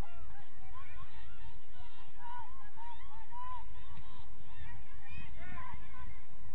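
A flock of birds calling continuously: many short, overlapping, arched calls, goose-like honks, over a low rumble.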